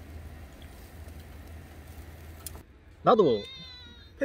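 Faint steady background hum, then about three seconds in a pet animal's brief, high, wavering whine.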